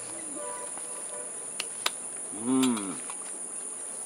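Steady high-pitched chorus of insects such as crickets. About two and a half seconds in there is a short voiced 'hmm' from a person, and just before it a couple of faint clicks.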